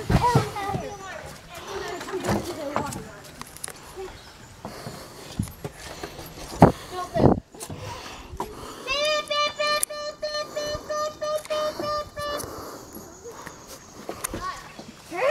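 Children's voices at play, then a steady high-pitched tone held for about three and a half seconds in the second half.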